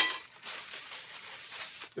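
A metal tube clinks once at the start with a short ring, then its clear plastic wrapping crinkles steadily as it is pulled and handled.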